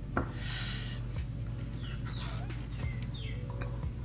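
Chickens making noise: a few short calls, each falling in pitch, in the second half, over a steady low hum.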